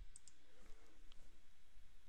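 A few faint, brief clicks over low room tone.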